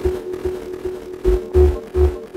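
Electronic music from a DJ mix: a pulsing mid-pitched synth note over deep bass hits, with the heaviest bass hit about one and a half seconds in.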